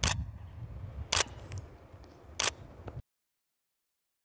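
Camera shutter fired three times, about a second and a quarter apart, each a short sharp click.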